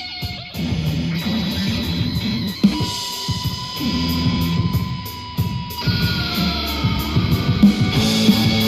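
Music with guitar played back through Bose 501AR-II speaker cubes with their bass-reflex subwoofer, as a sound test.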